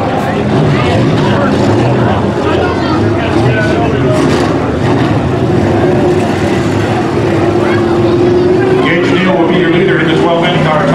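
Sport modified race cars' engines running at low speed, a steady drone that rises slightly near the end, with voices chattering over it.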